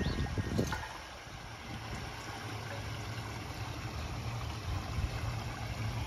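Garden koi pond water trickling and running steadily, with a steady low hum underneath.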